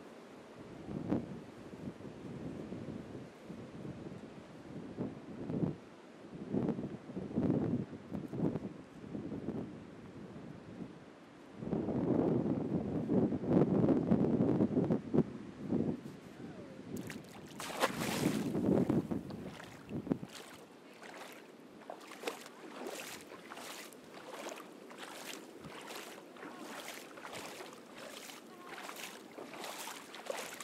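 Wind buffeting the microphone in gusts over a wash of surf for most of the first two-thirds. From about 17 s, regular splashes of feet wading through shallow seawater take over, about one and a half steps a second.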